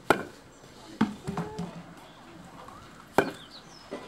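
A young crocodile's jaws snapping shut three times in sharp, hard clacks, about a second apart at first and then after a two-second gap, as it strikes at a hand held in front of it.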